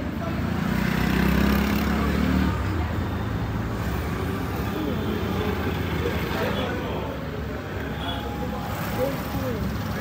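Street traffic noise: a vehicle engine running, loudest in the first couple of seconds, over a steady rumble, with voices faint in the background.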